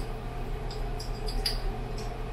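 Faint light clicks and scrapes of a spice jar and measuring spoon as garlic powder is added to a saucepan, a few small ticks about halfway through, over a steady low kitchen hum.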